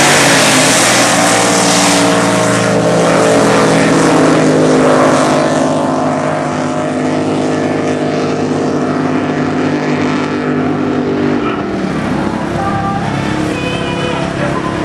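Drag boat engines running at full throttle down the course, loudest at the launch and then a steady high drone. About twelve seconds in the pitch drops and the sound fades as the engines come off the throttle.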